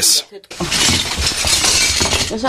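A sudden crash, then about a second and a half of dense, noisy clatter of breaking.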